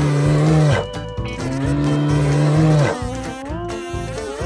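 An animated bear's roar: two long, low calls, each held at one pitch and then dropping off, the second starting about a second and a half in, over background music.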